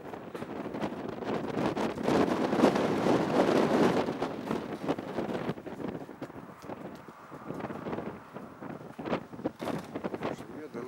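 Gusty wind buffeting the microphone, swelling to its loudest about two to four seconds in and then easing off, with a few sharp buffets near the end.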